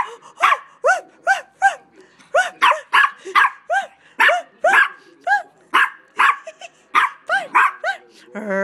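Small dog giving a fast run of short, high yips, about two or three a second, each rising and falling in pitch. It is vocalizing at its owner as if trying to talk back.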